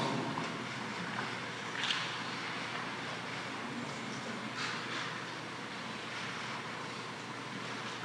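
Steady background hiss and room noise in a pause between a man's spoken phrases, with two faint brief soft sounds about two and five seconds in.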